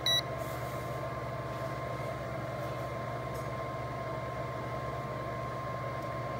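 A digital multimeter's alarm beeping rapidly, about four beeps a second, cuts off a fraction of a second in. After it there is a steady low electrical hum from the bench with a thin high tone.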